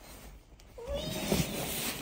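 A child's drawn-out 'wee!', rising and then falling in pitch, as a plastic sled slides down over snow with a scraping hiss underneath.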